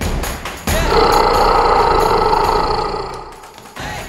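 Intro music with a loud, sustained sound effect laid over it. The effect starts suddenly about a second in, lasts about two and a half seconds and fades out near the end.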